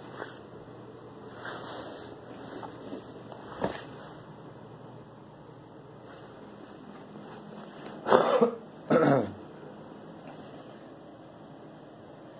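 A person coughing twice, about a second apart, a little after the middle.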